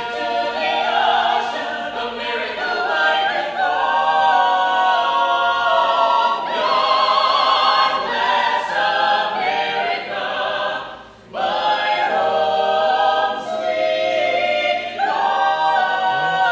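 Mixed-voice a cappella choir singing in close harmony, without instruments, in a reverberant domed rotunda. The singing briefly drops off about eleven seconds in, then resumes.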